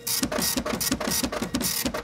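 Logo-intro sound effect: rapid, even clicking at about ten clicks a second, mechanical like a ratchet or printer, with bursts of hiss.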